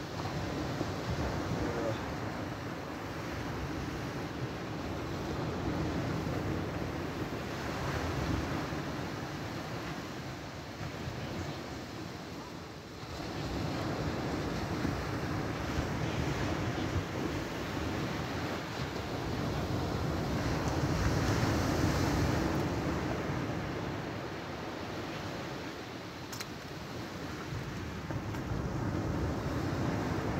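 Sea surf breaking along the beach, a steady rushing wash that swells and eases every few seconds, with wind rumbling on the microphone.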